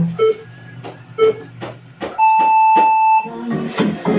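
An electronic beep: one steady tone held for about a second, starting about two seconds in and the loudest sound here.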